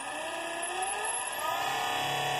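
A 24 V brushed DC motor speeding up as its PWM controller's duty cycle is turned up. Its whine rises in pitch, then levels off at a steady higher speed about a second and a half in.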